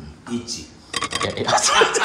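A burst of rapid metallic clinking and jingling that starts about a second in, after a brief voice.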